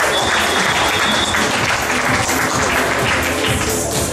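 Spectators applauding over background music as a rally ends.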